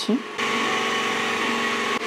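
Steady whirring hum of a small electric motor, cutting in suddenly about half a second in.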